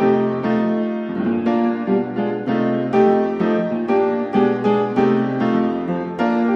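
Piano music, a run of notes changing roughly twice a second.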